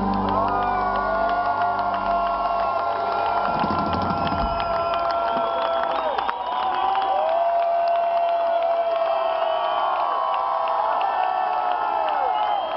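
A large festival crowd cheering and whooping at the end of a song, with long drawn-out shouts that tail off and scattered clapping. The band's last chord dies away a few seconds in, leaving the crowd alone.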